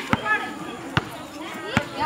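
A basketball bouncing on a concrete court, three bounces a little under a second apart, over the voices of people talking and calling out.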